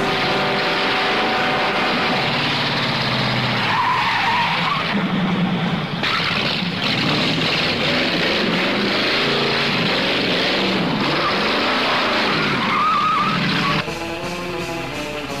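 Hot rod engine running hard under a dense rush of noise, with tyre squeals about four seconds in and again near the end: a car chase and skid on an old TV-show soundtrack.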